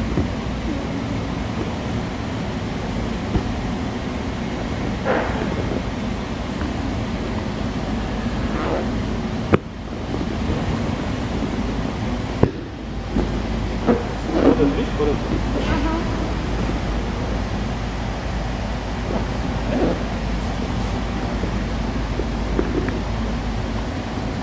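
Steady background noise of a large gym hall with faint voices in it. Two sharp clicks come about three seconds apart near the middle, each followed by a brief drop in the noise.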